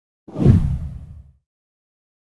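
Whoosh sound effect with a deep boom, starting about a quarter of a second in and fading out over about a second: an on-screen transition into an animated channel promo.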